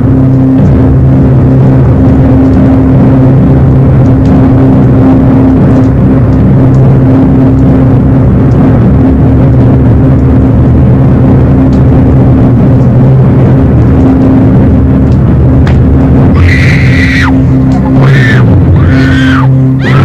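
Horror film score: a loud, steady low drone held throughout, joined in the last few seconds by high, wavering tones that rise and fall in arcs.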